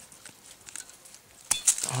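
Faint clicks and rustling among bushy stems, then one sharp snip of pruning shears cutting through a black currant stem about one and a half seconds in.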